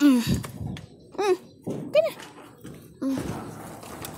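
Tuxedo cat meowing four times in short, rising-and-falling calls, the begging meows of a hungry cat. A thump sounds at the very start.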